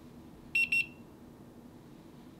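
A dretec digital thermometer gives two short, high-pitched beeps in quick succession about half a second in, signalling that it has taken and is holding a temperature reading.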